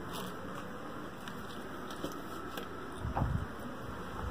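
Handling noise as things are picked up and the phone is moved: low rustling with a few faint clicks, and a soft thump about three seconds in.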